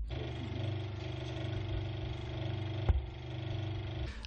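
A steady mechanical hum, like an engine or motor running at a constant speed, with one sharp click about three seconds in.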